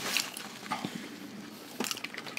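Close-up chewing and lip-smacking of people eating soft White Castle slider burgers: scattered wet clicks, with a few sharper clicks near the end.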